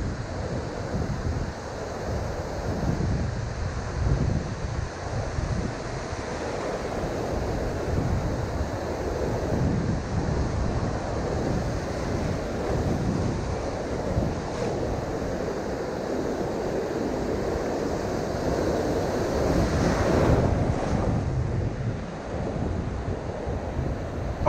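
Ocean surf breaking and washing up the beach, with wind buffeting the microphone. The wash swells and eases, and is loudest when a wave rushes in close about twenty seconds in.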